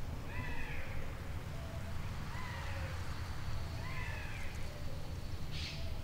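An animal calling outdoors, short arched calls repeated about every second, over a steady low rumble of outdoor ambience. A brief hiss comes near the end.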